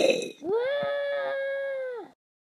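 A breathy puff of air from a voice, then a high voice holding one steady, wordless note for about a second and a half before it cuts off.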